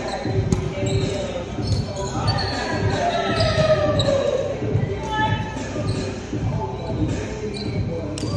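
Volleyball being played indoors: a served ball struck by hand and a few sharp ball hits, with players' voices calling out, all echoing in a large gymnasium.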